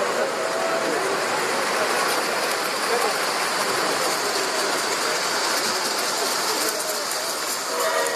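Model train running on a show layout, heard through the steady hubbub of a large crowd in a big echoing hall.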